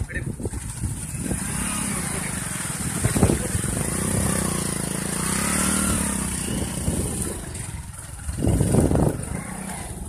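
A small vehicle engine, such as a motorcycle's, running with its pitch rising and then falling through the middle seconds, over a steady rush of wind on the microphone. A voice is heard briefly near the end.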